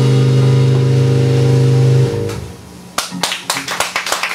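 A live rock band's final chord on electric guitars, bass and keyboard, held steady and then cut off about two seconds in, ending the song. About a second later the audience starts applauding.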